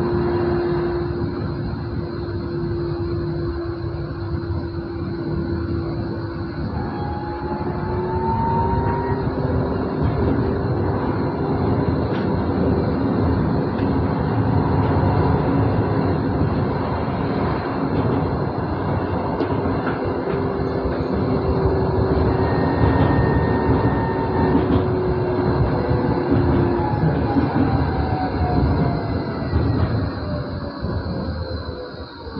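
Moderus Gamma LF 03 AC low-floor tram running, heard from the driver's cab: a steady rumble of wheels on rail with the whine of its electric traction drive, which rises in pitch about eight seconds in and falls near the end.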